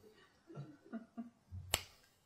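A quiet pause with a few faint soft sounds, then one sharp click near the end.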